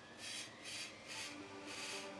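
Faint rhythmic rasping strokes, about two a second, with soft steady tones coming in about halfway through.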